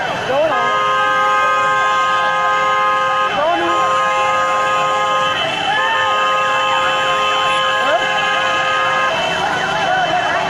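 Vehicle horns sounding together in three long, steady blasts, held at a fixed pitch. Under them is the chatter of a crowd.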